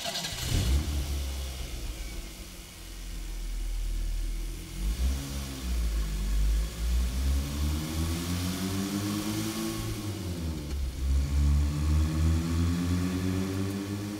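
Motor vehicle engine revving, its pitch climbing and dropping a few times.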